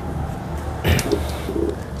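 A bird calling: two short low notes, just after a sharp knock about a second in.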